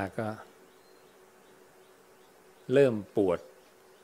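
A man speaking Thai in short phrases, a word at the start and a brief phrase near the end, with a long pause between. A faint steady hum runs under the pause.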